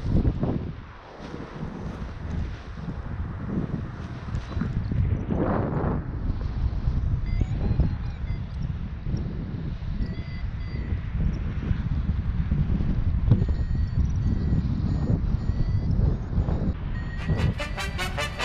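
Airflow buffeting the microphone during a paraglider launch and flight, a steady low rushing with gusts. From about seven seconds in it is joined by faint short electronic beeps at changing pitches from a flight variometer. Music starts about a second before the end.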